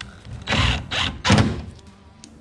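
Cordless drill driving screws into Coosa composite board coaming supports, in two short runs.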